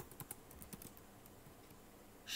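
Faint keystrokes on a computer keyboard: a handful of quick taps in the first second, then stillness.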